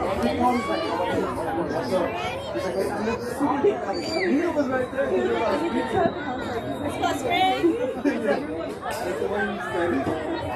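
Many voices chattering over one another, with a few higher-pitched calls rising above the talk.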